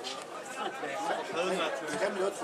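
Indistinct chatter: several people talking at once, with no single voice clear.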